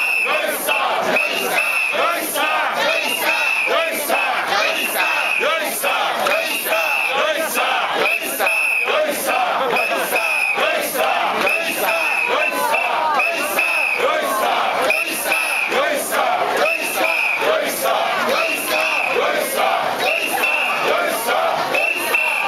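A crowd of mikoshi bearers shouting and chanting together in a steady rhythm, loud and continuous, as they carry the shrine.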